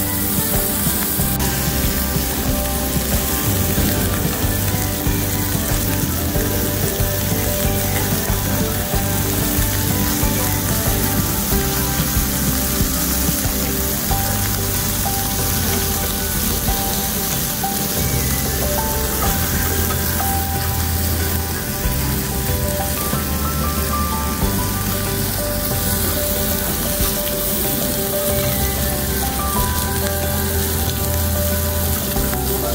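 Pork belly sizzling steadily on a cast-iron pot-lid griddle, under background music with a bass line that changes every couple of seconds.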